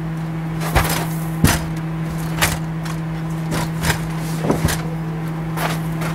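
A folded Triaxe Sport electric scooter being lifted and slid into a motorhome's storage bay: a string of irregular knocks and clatters as its metal frame bumps the compartment, over a steady low hum.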